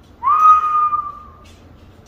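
A person whistling one note that slides up quickly, then holds steady for about a second.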